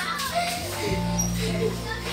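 Children's voices with music playing in the background; steady low notes come in about a second in.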